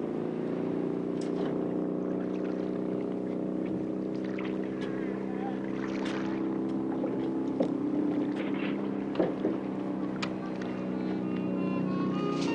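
A boat engine running at a steady low drone, rising a little in pitch at first and then holding. Several sharp knocks and clatters sound over it, the loudest two about 7 and 9 seconds in.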